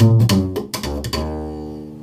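Upright bass played slap style: a quick run of plucked notes mixed with sharp snaps of the strings against the fingerboard, then about a second in a final note rings out and slowly fades. This is the slap-bass ending lick played in D.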